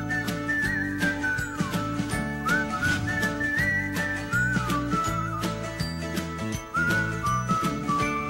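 Upbeat background music: a whistled tune that slides between notes, over a steady beat and bass line.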